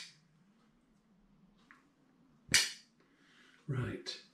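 Near-quiet room tone with one short, sharp sound about two and a half seconds in, then a brief voice sound at the very end.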